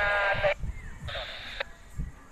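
A wavering, high-pitched voice received over a handheld two-way radio's speaker, thin and cut off above the upper midrange, stopping abruptly about half a second in; a brief hiss of radio static follows about a second in.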